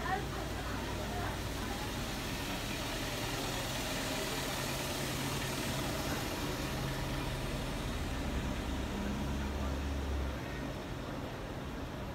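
Idling engines of parked police buses: a steady low drone under street noise, whose lowest hum drops away about ten seconds in.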